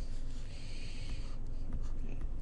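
A stylus on a tablet screen: a soft hiss for about the first second and a half, then light taps and scratches as a drawing stroke begins.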